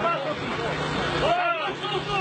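Several people talking and calling out over one another, over a steady low hum.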